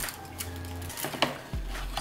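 Hands handling fried chicken tenders and a crumbly biscuit in a cardboard takeout box: light rustling and small taps, with one sharper tap about a second and a quarter in.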